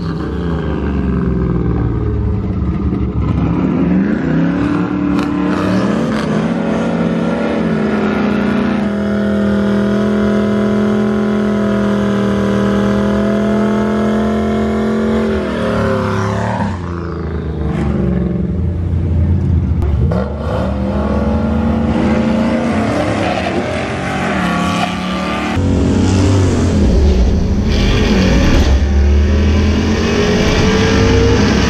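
Turbocharged two-valve 4.6-litre V8 of a Mustang Bullitt revving in the burnout box. About nine seconds in it holds a steady high rev for about six seconds, the burnout, then drops back. It then idles with throttle blips, rising again near the end.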